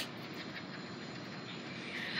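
Steady, faint background noise with no clear source, and no speech.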